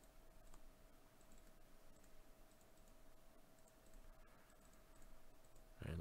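Near silence with faint, scattered computer mouse and keyboard clicks over a faint steady hum.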